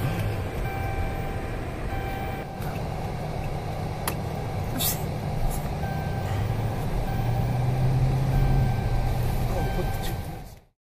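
Car cabin noise while driving: a steady low engine and road rumble that swells a little toward the end, with a couple of sharp clicks about four and five seconds in.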